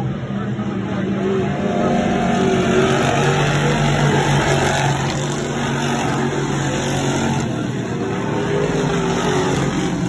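Dirt-track sportsman modified race car engines running on the oval, a steady drone with pitch rising and falling as the cars pass. The sound swells a couple of seconds in and then holds.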